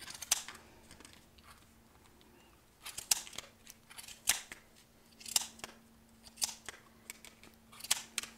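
Sharp scissors snipping through the wrapped loops of chunky yarn on a plastic pom-pom maker: one cut just after the start, then after a short pause a snip or two about every second. A faint steady hum runs underneath.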